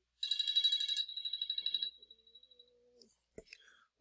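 An electronic alert tone trilling rapidly at a high, steady pitch for about a second and a half. A faint lower tone follows, then a single click.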